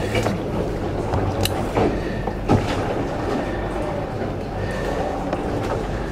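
Seawater rushing along a sailing catamaran's hull, heard inside a low cabin, over a steady low hum. A couple of short knocks or creaks come about one and a half and two and a half seconds in.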